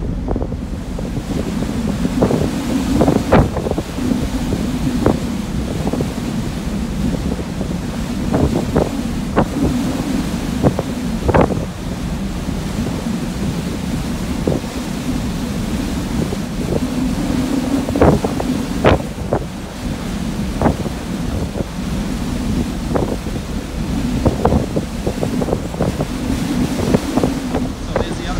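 Wind buffeting the microphone in frequent sharp gusts over the steady rush of a large ferry's churning wake.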